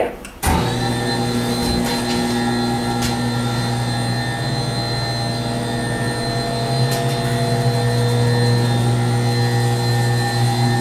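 Garaventa Genesis vertical platform lift's electric drive motor starting about half a second in as the up button is held, then running with a steady hum as the platform rises.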